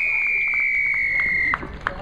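Referee's whistle: one long, steady blast of about a second and a half, dipping slightly in pitch and cutting off sharply, blown to award a try.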